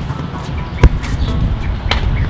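A single sharp thump about a second in, then a lighter click near the end, over a low steady rumble.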